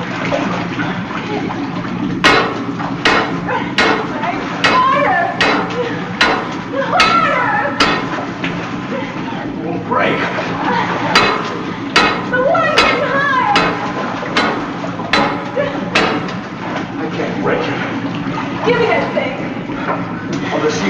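Water pouring steadily into a pool, with a series of sharp knocks about every second or less, stopping for a while midway and then resuming. Between the knocks there are wordless, strained human voices.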